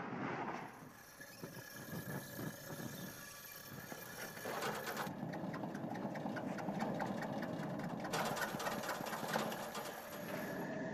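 Rapid small clicks and rattles of a camp stove being handled and readied for lighting, with fabric rustling, busier from about halfway through.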